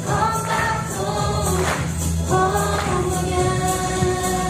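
A choir of students singing together over music with a bass line and a steady beat.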